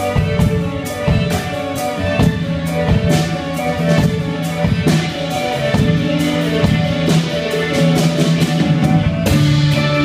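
Live instrumental band playing: bowed cello and violin over electric guitar and a drum kit keeping a steady beat.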